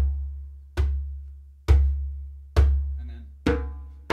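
Djembe bass strokes: five even open-palm hits in the centre of the head, about one a second. Each is a deep thud that rings out and dies away slowly before the next.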